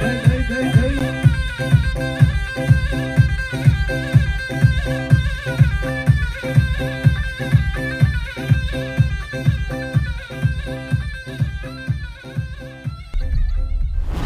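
Kurdish govend folk dance music: a held, reedy melody over a steady drum beat of about two strokes a second. About a second before the end the music drops away and a low rumbling effect comes in.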